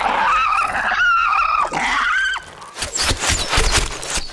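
High-pitched, wavering squeaky chatter like a cartoon insect's laugh, lasting about two and a half seconds. Near the end it gives way to a quick, irregular run of sharp knocks or thuds.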